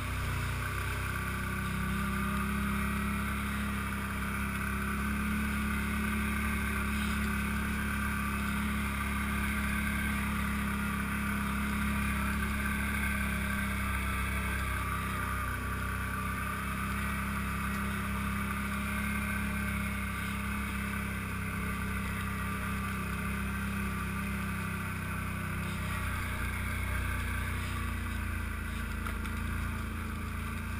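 ATV engine running steadily as the quad rides along a rough trail, its note holding at a fairly even pitch and level.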